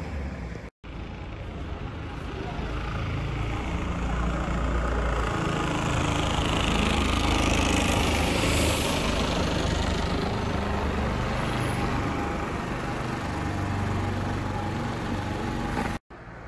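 Street traffic: a road vehicle's engine and tyre noise building up to a peak around the middle and then easing off, after a brief cut-out near the start.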